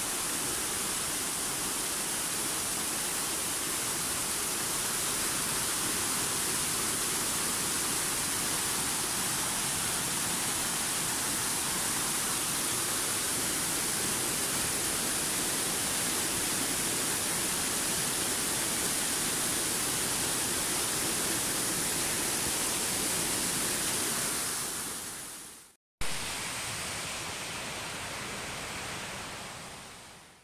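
Steady rush of water spilling over a small concrete weir as a waterfall. It fades out about 25 seconds in; after a brief break a fainter steady rush returns and fades away at the end.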